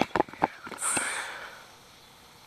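A few quick clicks and knocks of hands handling a freshly caught bass and its lure, then a short breathy sniff about a second in.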